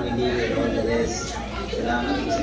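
Indistinct chatter: several voices talking at once, with no clear words.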